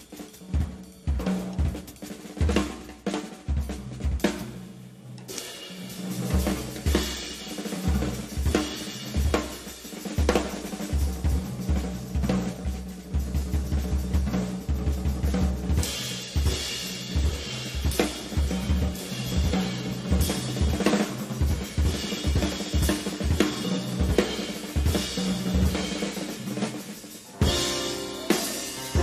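Live band music led by a drum kit playing busy snare, bass-drum and cymbal strokes over steady low held notes from the band.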